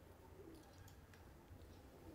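Near silence, with faint eating sounds: a few light clicks of forks on plastic plates and soft chewing.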